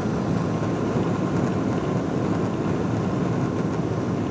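Steady cabin rumble of a Boeing 777-200ER rolling on the ground: its Rolls-Royce Trent engines running and its wheels rumbling over the pavement, heard from inside the cabin over the wing, with a faint steady hum.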